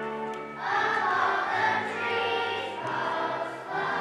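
A children's choir singing a Christmas song over instrumental accompaniment. The accompaniment plays alone at first, then the voices come in, louder, about half a second in.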